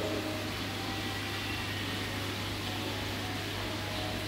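Aquarium air pump running: a steady low hum with an even hiss behind it.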